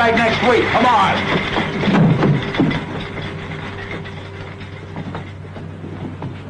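A man's voice in short, unintelligible exclamations during the first second or so, then quieter background with a steady hum and a faint held tone.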